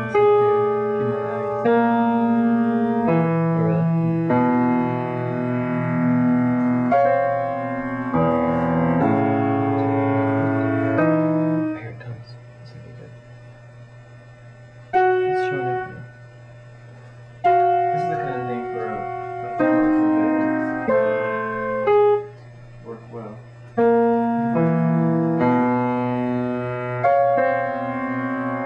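Piano playing slow, held notes one after another, with a few quiet gaps in the middle.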